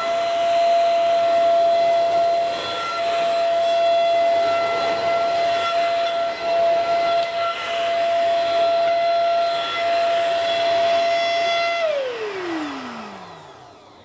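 A 700 W corded handheld stick vacuum cleaner (Alfawise SV-829) running at full power, its motor a steady high whine, as the floor brush sucks polystyrene dots off a carpet. About twelve seconds in it is switched off and the whine falls steadily in pitch as the motor spins down.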